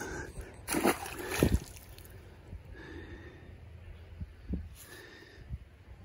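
A released bass splashing into the pond: two short water splashes a little under a second and about a second and a half in.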